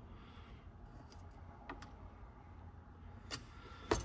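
Quiet room tone with a few small metallic clicks, two sharper ones near the end, as a steel digital caliper is slid closed onto a pushrod.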